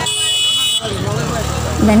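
A short, high-pitched horn toot lasting under a second, followed by a low rumble under faint street chatter.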